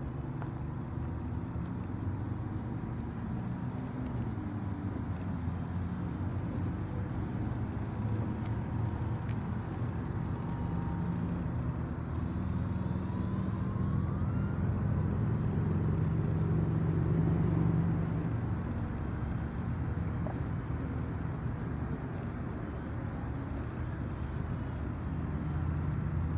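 Radio-controlled model airplane flying overhead: a steady low drone that grows louder about two-thirds of the way through as it passes nearer, with a faint whine gliding up in pitch near the middle.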